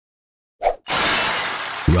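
A glass-shatter sound effect: a short hit about half a second in, then a crash of breaking glass that fades away over about a second.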